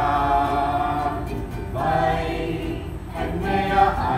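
A group of voices singing a song together in short phrases with held notes, led by a woman playing a ukulele.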